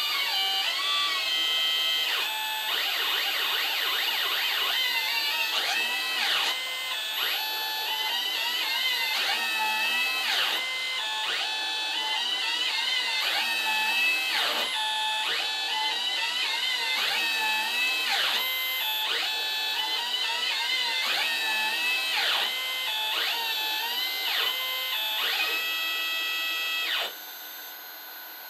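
Stepper motors of a hobby CNC router playing a melody, the step rate of each move setting the pitch: a run of held notes joined by quick pitch slides. The tune stops about a second before the end.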